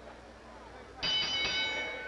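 Boxing ring bell struck about a second in and left ringing, a cluster of high metallic tones that hangs on with little decay.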